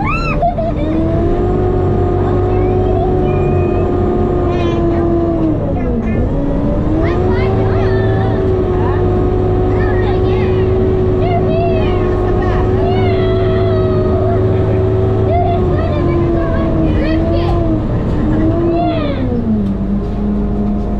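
Sherp all-terrain vehicle's engine running under way, heard inside the cabin: a loud steady drone whose pitch dips briefly about six seconds in and falls again near the end.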